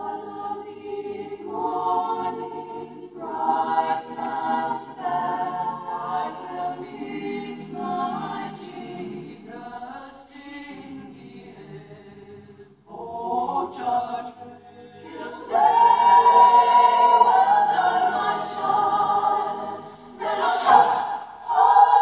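Mixed choir of men's and women's voices singing together, entering right at the start. The sound thins to a soft passage a little before the middle, then swells loud for the last third, with crisp 's' consonants cutting through.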